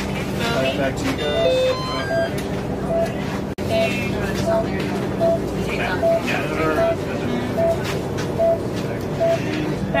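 Patient monitor beeping steadily, one short tone about every 0.8 seconds, over a steady low hum and background voices.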